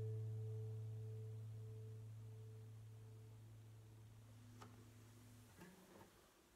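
The last chord of a Gibson Hummingbird acoustic guitar ringing out and slowly dying away. The upper notes fade first and a low bass note sounds longest, until it is damped about five and a half seconds in. A couple of faint knocks follow as the guitar is handled.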